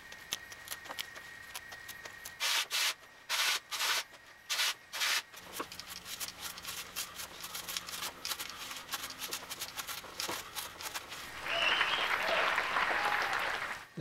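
Kitchen scissors snipping through kale and collard stems and leaves: a run of short, crisp cuts, with the leaves rustling. Near the end comes a louder, steady rustle lasting a couple of seconds.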